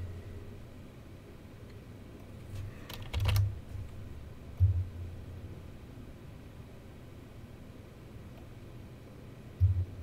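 Clicking at a computer: a cluster of sharp clicks about three seconds in, and a few dull low thuds around five and ten seconds in, over quiet room tone.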